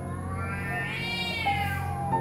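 A cat meowing: one long, drawn-out meow that rises and then falls in pitch, over soft ambient background music.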